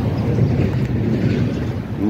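Wind buffeting a phone's microphone outdoors: a steady, loud low rumble with no clear pitch.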